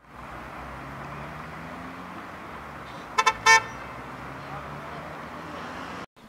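Steady traffic noise with a low engine hum, and a vehicle horn sounding three short toots about halfway through, the last a little longer.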